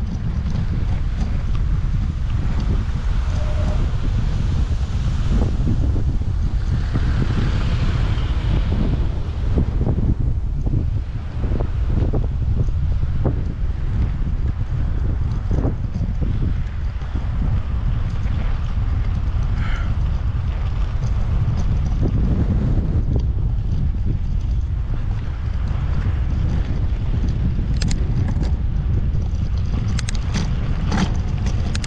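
Steady low rumble of wind buffeting an action camera's microphone while riding, with scattered ticks and crunches from bicycle tyres rolling over a sandy dirt road.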